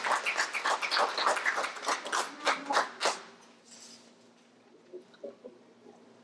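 A small audience clapping, the claps thinning out and stopping about three seconds in. After that there is a quiet room with a faint steady low hum and a few soft knocks.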